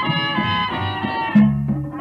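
Instrumental passage of a Latin dance band's song, with horns playing a melody over a moving bass line and rhythm section.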